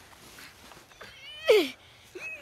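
A young child's short, high whining cry that falls in pitch, about one and a half seconds in, over faint rustling.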